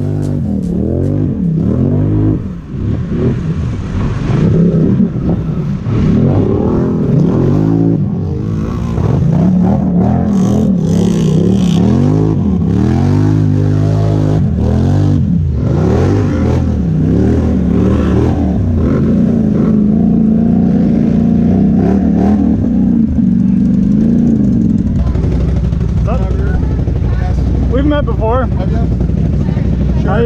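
ATV engine revving up and down over and over as it is ridden. It then holds steady revs for several seconds and drops to a lower, even run near the end.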